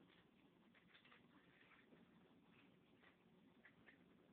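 Near silence: faint room tone with a few soft, faint ticks.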